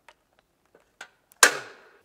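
Light clicks and taps of a tree climber's gear against the trunk, then one loud sharp knock about one and a half seconds in that dies away over about half a second.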